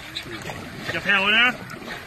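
Wooden paddles of a long-boat crew stroking through river water, under men's talk, with one loud, wavering shout about a second in that is the loudest sound.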